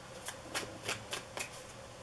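A deck of tarot cards being shuffled in the hands: a run of soft, quick card clicks, about three a second.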